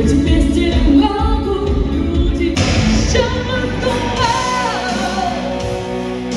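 Live pop-rock song with a singer over amplified backing music. About two and a half seconds in, the music turns brighter and fuller.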